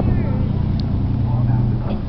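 Steady low drone of a ferry's engine, with voices in the background.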